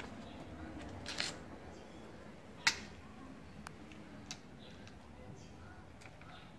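Handling noise from a handheld camera being carried around: a few sharp clicks over a faint background, the loudest about two and a half seconds in.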